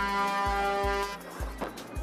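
One long horn blast from the match-race umpires' boat, held on one steady pitch and cutting off about a second in. It is the sound signal that goes with a yellow penalty flag. Background music with a steady beat runs underneath.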